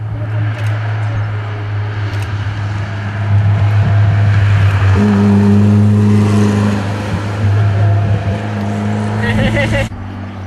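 Engine of a classic SEAT 600 rally car running at steady revs as it takes a hairpin and drives away, loudest in the middle, with people's voices over it.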